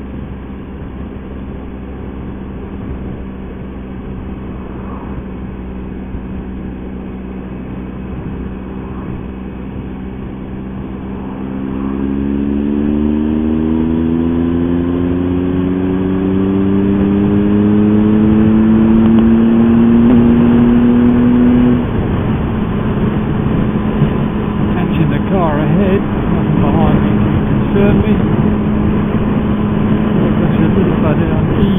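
Motorcycle engine under way with road and wind noise. About a third of the way in it pulls harder, its pitch rising steadily and getting louder for some ten seconds. Then the pitch drops suddenly and settles into a steady cruise.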